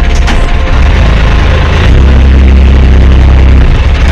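Small motorboat's engine running while under way: a loud, steady low rumble with wind buffeting the microphone. Two sharp clicks sound right at the start.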